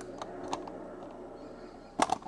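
Faint handling sounds of a crocheted cotton piece: two or three light clicks early on, over low room hiss.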